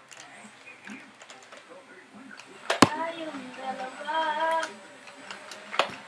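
A Nerf foam-dart blaster goes off with a sharp click a little under 3 s in, and another click comes near the end as it is handled. In between, a child's voice makes a wordless sound for about two seconds.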